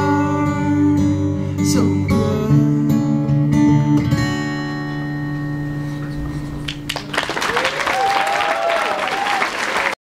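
Acoustic guitar strummed to a final chord that rings out for a few seconds, ending the song. About seven seconds in, audience applause and cheering with whoops starts suddenly.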